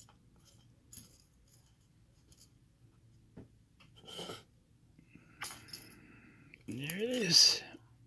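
Faint clicks and small metal taps from a disassembled brass padlock and small tools being handled. Near the end a short wordless vocal sound, its pitch rising then falling, is the loudest thing.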